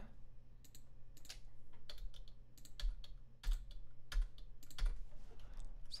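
Irregular clicks and taps of a computer keyboard and mouse while MIDI notes are entered in a DAW, over a faint steady low hum.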